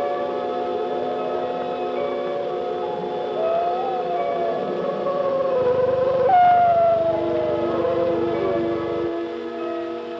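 Orchestral film score with sustained chords, and a wolf howling over it. There are two long howls; the second begins sharply about six seconds in and slides slowly down in pitch.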